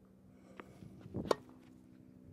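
Tennis ball struck with a slice: one sharp pock from the racket about a second in, with a few fainter knocks around it.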